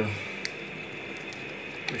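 A few faint clicks of insulated electrical wires being handled and pulled inside a recessed wall outlet box, over a steady background hiss.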